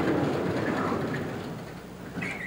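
A chalkboard being rubbed, most likely with an eraser: a dense, grainy scrubbing noise that fades out about a second and a half in.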